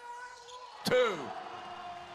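Basketball game court sound: a single sharp thump just before a second in, over steady held tones from the arena.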